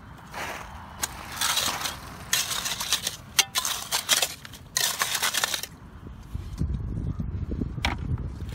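Clam rake scraping and crunching through rocky gravel and mud, about half a dozen digging strokes in the first six seconds. A low rumble follows near the end.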